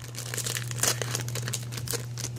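Pokémon booster pack wrapper crinkling and tearing as it is pulled open by hand, a run of sharp crackles.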